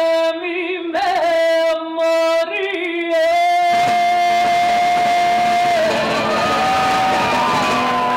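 A woman singing into a microphone in short phrases, then holding one long note from about four seconds in. A fuller layer of further tones builds beneath the held note in the second half.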